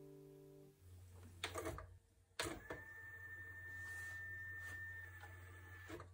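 The last chord of a song dies away, then comes the Tascam 244 Portastudio's cassette transport. Its keys clunk, and the tape rewinds with a steady thin whine for about three seconds before the transport stops with a click back at zero.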